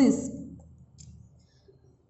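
A woman's voice trailing off at the end of a spoken word, then a single faint click about a second in, followed by near silence.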